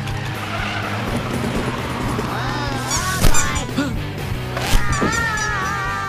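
Cartoon sound effects of a pizza delivery truck swerving through a turn: tires squealing, with two sharp knocks about three and four and a half seconds in, over orchestral chase music.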